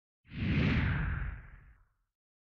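A whoosh sound effect with a low rumble under a hiss. It sweeps in about a quarter second in, slides slightly down in pitch and fades away within about a second and a half.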